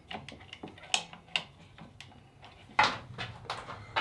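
Scattered light clicks and knocks of hands working the plumbing fittings and valve at a wall-mounted water filter, with a sharper click about a second in and a brief louder rustle near the end.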